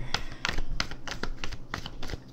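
A tarot deck being shuffled by hand: a string of irregular light clicks and taps, several a second.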